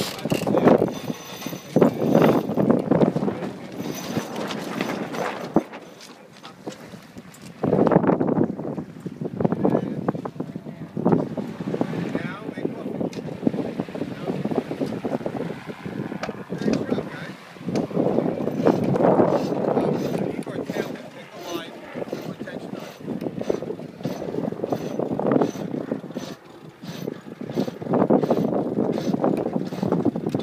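Wind on the microphone and indistinct voices of the crew aboard a sailboat under way, the noise rising and falling in uneven surges.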